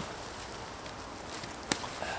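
Tent handling with faint rustling, then one sharp click near the end as the end of the tight-fitting pole of an OEX Bobcat 1 tent seats into its hole at the end of the tent.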